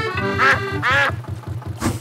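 Cartoon duck quacking twice, about half a second and a second in, over the steady low chugging of a canal boat's motor.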